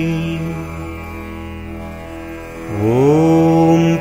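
Hindu devotional mantra chant in a man's voice. The held end of one 'potri' line fades away, then the voice slides up into a long sung 'Om' that opens the next line.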